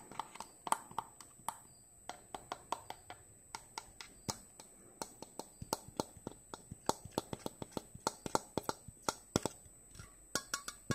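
Close-miked ASMR mouth sounds: quick irregular tongue clicks and lip smacks, several a second, growing denser and sharper about halfway through.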